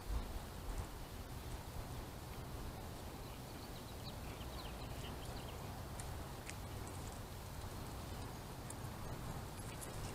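Faint outdoor background: a steady low rumble with scattered light clicks and a few faint high chirps around the middle.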